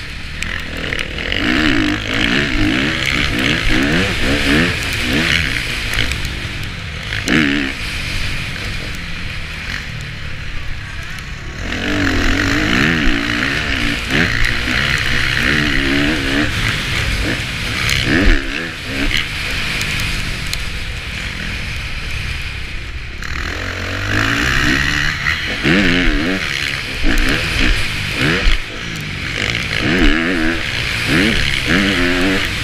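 Factory KTM four-stroke motocross bike engine heard onboard, revving up and down as the rider works the throttle through the gears, with wind rushing over the microphone. The engine sound thins out briefly twice, about a third and two-thirds of the way through, as the throttle is rolled off.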